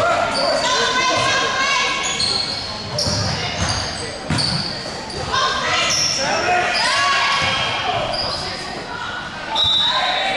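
Sneakers squeaking on a hardwood gym floor again and again, with a basketball being dribbled and players' voices calling, all echoing in a large gym.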